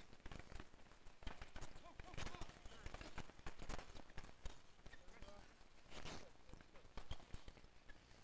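Street hockey play on a hard court: an irregular clatter of sharp knocks from sticks and ball hitting the court and each other, mixed with shoe steps, and faint distant voices of players.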